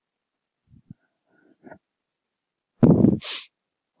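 A few faint small noises, then about three seconds in a short, loud burst of breath into the microphone that trails off into a brief hiss.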